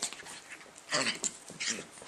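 A dachshund and a small black-and-white dog play-fighting, with two short dog vocal sounds, about a second in and again shortly after. A woman laughs over them.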